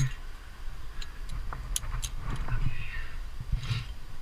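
Climbing rope being clipped into a carabiner on a sling, with a couple of sharp metallic clicks about halfway through, amid rustling of rope and gear.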